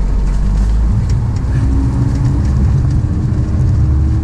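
A car engine running steadily, heard from inside the cab as a deep, even rumble with a faint hum above it; the rumble turns rougher about a second in.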